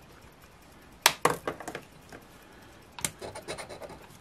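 A round scratcher token scraping the coating off a scratch-off lottery ticket, in two runs of quick strokes: the first starts with a sharp tap about a second in, the second comes about three seconds in.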